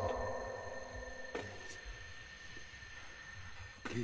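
A quiet, tense soundtrack drone of steady high held tones over a low rumble. The echo of a shouted line fades at the start, and a voice softly says "please" near the end.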